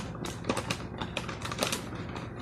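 Rapid irregular clicks and crackles, several each second, from something handled close to the microphone.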